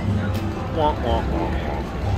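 Slot machine music during the free-spin bonus round, over the steady hum and din of the casino floor. About a second in there is a short voiced sound.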